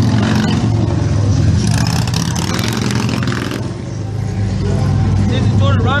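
Street traffic at a city intersection: a vehicle engine running steadily, with a burst of hiss about two seconds in that lasts nearly two seconds, and a low rumble building near the end.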